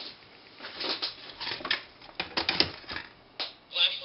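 A run of irregular sharp clicks and rattles from a power plug being plugged into a supercapacitor flashlight charger board, likely including its relay switching on to start charging the capacitor bank. Near the end a short voice-like sound from the board's speaker begins.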